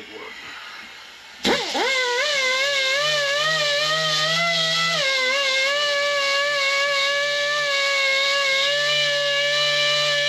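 A die grinder with a sandpaper roll starts suddenly about a second and a half in and then runs as a steady high whine, beveling the edge of a bore sleeve. Its pitch wavers slightly and dips a little near the middle as the roll bears on the edge.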